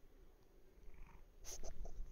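Domestic cat purring close to the microphone, a low continuous rumble. A few short sharp clicks and rustles come about one and a half seconds in.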